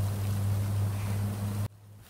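Heavily amplified night-time recording: a loud steady low hum with hiss over it, holding faint, indistinct sounds that the uploader takes for a skunk's chattering. It cuts off abruptly near the end.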